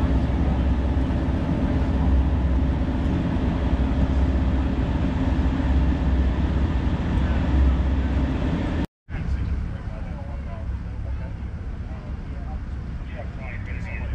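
Steady low rumble of a boat engine idling. After an abrupt cut about nine seconds in, a quieter background of engine and wind noise follows, with faint voices near the end.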